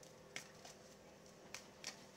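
Near silence: room tone, with a few faint, brief clicks.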